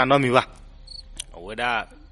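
A man narrating in short phrases, with a brief, faint, high-pitched chirp and a tiny click in the pause between them, about a second in.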